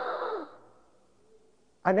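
A man's breathy exhale like a sigh, lasting about half a second and fading, followed by a quiet pause before his speech resumes near the end.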